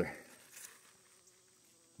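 A bee buzzing faintly and steadily at a pumpkin flower as it pollinates.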